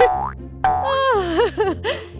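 Cartoon "boing" spring sound effects, a string of pitched swoops that bounce down and up in pitch, laid over children's background music.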